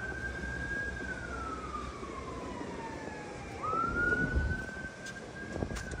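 A siren wailing: one tone that rises, holds, slides slowly down, then sweeps back up about three and a half seconds in and holds again.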